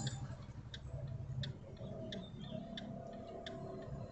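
A car's turn-signal indicator ticking faintly, about one tick every 0.7 seconds, heard inside the cabin over the low steady hum of the idling engine.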